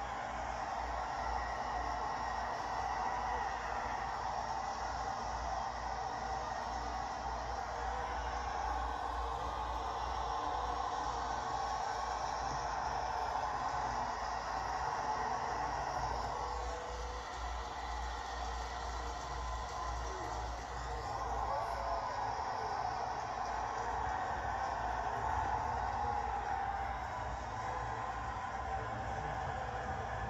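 Stadium crowd cheering steadily, heard through a television's speakers.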